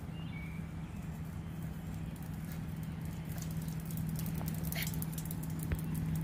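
Footsteps on a concrete path, with small clicks that grow more frequent in the second half, over a low steady hum.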